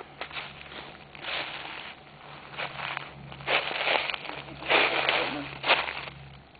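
Footsteps on a wooded forest floor: several uneven steps, each a short patch of rustling noise.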